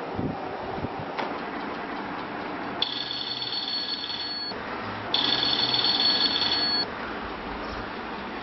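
Mobile phone ringing twice, each ring a high steady trill about a second and a half long, the second one louder, over a steady background hiss.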